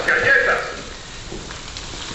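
Chopped onion and garlic frying in oil in a pan: a steady sizzle after a man's voice trails off in the first half second. The onion is beginning to scorch.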